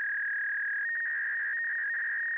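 Steady electronic sine-wave beep, one high tone held without change, with a second slightly higher tone joining about a second in.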